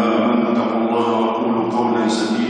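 A man's voice chanting Quranic recitation, drawing out one long, steady sung note that shifts slightly in pitch about a second in.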